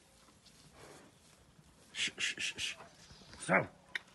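A person calling a calf with hushing sounds: four quick hissing 'ch' calls about two seconds in, then one drawn-out call falling in pitch near the end.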